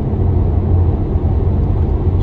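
Steady low rumble of road and tyre noise heard inside a moving car's cabin.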